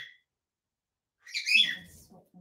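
About a second of near silence, then near the end a short chirping call from a pet parrot, lasting about half a second. The birds are kicking off because they are missing out on being part of the stream.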